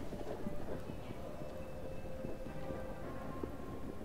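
Steady low ambience rumble scattered with many small irregular taps, under a faint sustained musical tone.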